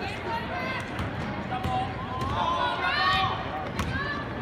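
Basketball game sounds on a hardwood gym court: a few sharp thumps of the ball bouncing, with spectators' voices and a raised shout about two to three seconds in.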